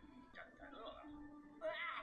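Faint anime episode audio: high-pitched cartoon character voices speaking with swooping pitch over background music.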